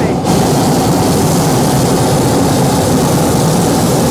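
Hot-air balloon gas burner firing: a loud, steady rush of burning gas, held open to heat the envelope so the balloon does not sink.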